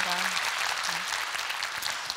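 A large audience applauding.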